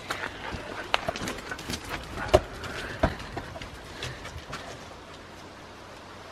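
Siberian huskies scuffling and running on a gravel path: a rough, gritty scraping with scattered sharp knocks, the loudest two a little past two and three seconds in.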